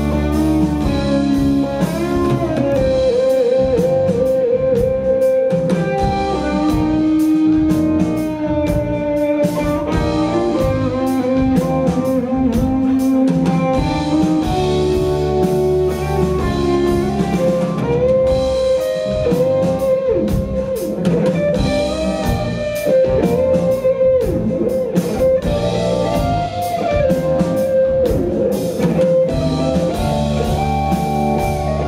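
Live symphonic rock band playing: a Stratocaster-style electric guitar carries the lead melody in long held notes with vibrato, over keyboards, bass and drum kit.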